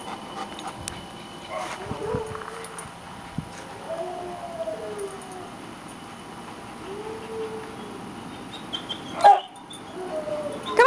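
A dog whining softly in a few drawn-out, arching whimpers, with a sharp knock near the end.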